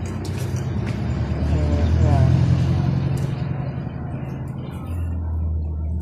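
A low, steady motor rumble that swells about two seconds in, with faint voices behind it.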